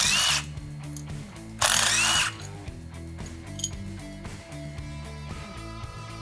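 Cordless impact tool run in two short bursts, loosening the brake rock deflector bolts, over background music with a steady beat.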